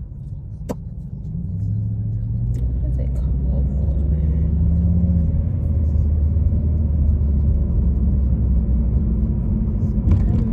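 Car engine and road rumble heard from inside the cabin while driving, growing louder over the first few seconds and then holding steady, with a low engine drone. A single sharp click just under a second in.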